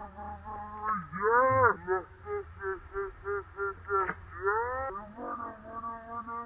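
A person's high-pitched rhythmic vocal cues: short repeated notes at about three a second, with a long call that rises and falls in pitch about a second in and another about four seconds in.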